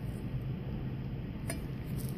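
Low steady room hum with one faint light click about one and a half seconds in, from a glass capillary tube being set against the plastic holder of a microhematocrit reader.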